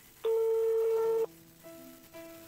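A single steady telephone-style beep lasting about a second, loud over soft background music.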